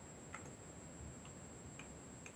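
Quiet room tone with about three faint, sharp clicks spread across the two seconds, over a steady faint high-pitched whine.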